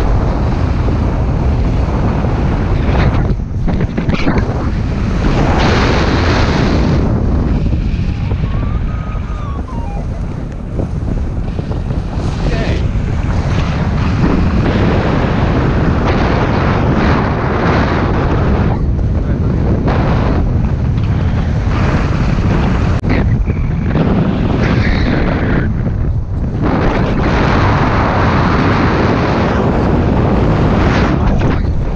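Loud wind noise buffeting the microphone of a camera on a paraglider in flight, rising and falling unevenly in gusts.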